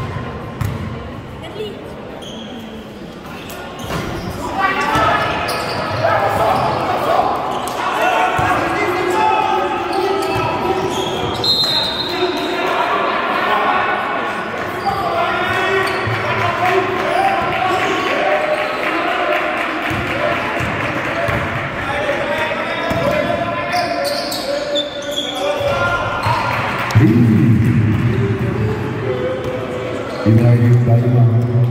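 A basketball bouncing on a gym floor, with the voices of players and spectators calling and talking loudly over it from a few seconds in, echoing in a large gymnasium.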